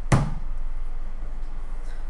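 A single short knock of the clear plastic tub being handled just after the start, followed by a steady low hum.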